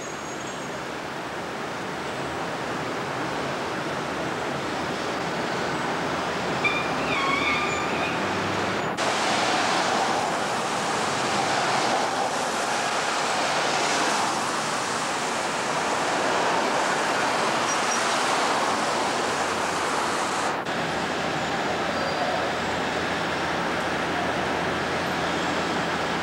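City street traffic noise: a steady wash of cars and trucks passing. A louder stretch in the middle starts and stops abruptly, with a few faint high squeaks before it.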